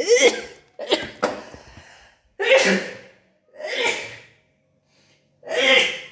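A woman sneezing repeatedly, about five sneezes in a row, each a short loud burst with a brief pause before the next.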